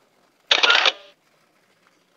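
Smartphone camera shutter sound, once and short, about half a second in: a photo being taken.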